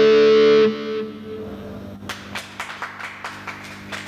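Distorted electric guitar holding a final sustained chord that cuts off sharply under a second in, leaving a low steady hum. From about two seconds in, scattered sharp claps start up.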